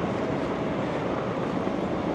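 Steady outdoor traffic noise from buses and vehicles, with a faint even hum in it that fades out near the end.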